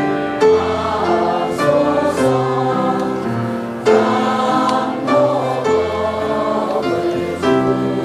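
A congregation singing a Buddhist hymn together in long held notes, with keyboard accompaniment.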